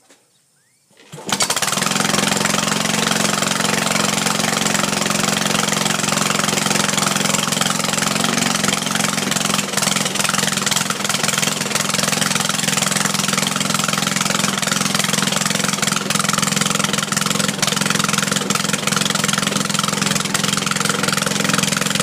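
Riding lawn mower's small gasoline engine, started without its starter motor, catches abruptly about a second in and then runs steadily and loudly.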